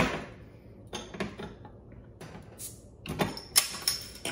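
Short clicks and knocks of a glass beer bottle and a metal bottle opener being handled. There is a sharp knock at the start and a louder click about three and a half seconds in as the crown cap is pried off.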